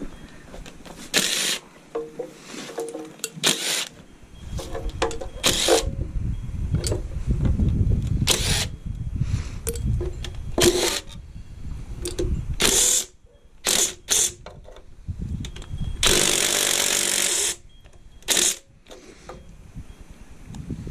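A DeWalt cordless drill fitted with a socket runs in short bursts, backing out the oil pan bolts on a small-block Chevy 350, with one longer run of about a second and a half near the end. Wind rumbles on the microphone through the middle.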